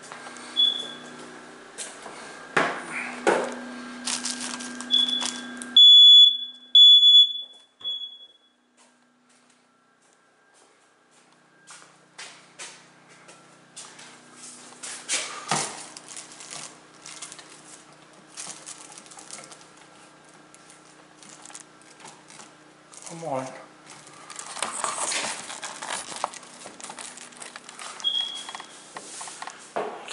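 Hardwired smoke alarms sounding under test: a short high chirp at the start, then about four loud, high-pitched beeps about a second apart around five to eight seconds in, and another short chirp near the end. Scattered knocks and handling noise in between, from a broom handle pressing the test buttons.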